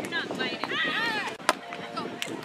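A sharp slap of a hand striking a volleyball about one and a half seconds in, after voices calling out on court.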